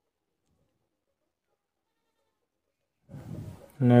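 Near silence for about three seconds, then a man's voice starts just before the end.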